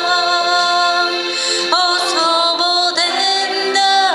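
A woman singing a slow worship song into a microphone: long held notes joined by short upward slides between them.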